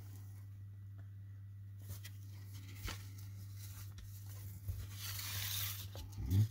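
Foil wrapper of a baseball card pack tearing open with a crinkly rustle for about a second near the end, after a few faint handling clicks. A steady low hum runs underneath.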